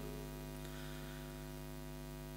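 Faint, steady electrical mains hum with many even overtones, as from a microphone and amplifier system, with the echo of a chanted voice dying away at the start.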